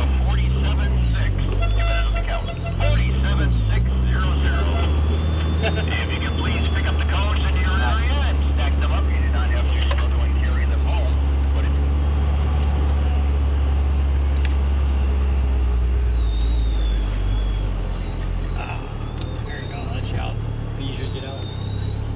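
Mazda Miata's four-cylinder engine heard from inside the open cockpit during an autocross run: the revs rise and fall over the first few seconds, then hold a steady drone for about ten seconds before easing off near the end, with wind noise throughout.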